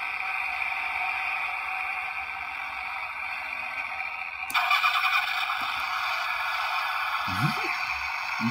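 Recorded car-engine start and idle sound, thin and tinny, played through the tiny built-in speaker of a capsule-toy ENGINE START/STOP push button. About four and a half seconds in, a second, louder burst of the same kind of engine sound begins, as a key-type ignition-switch toy is worked to compare the two.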